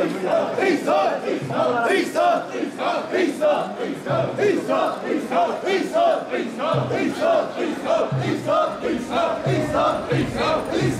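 Crowd of mikoshi bearers chanting in unison as they carry the portable shrine, a short shouted call repeated over and over in a steady rhythm, under two calls a second.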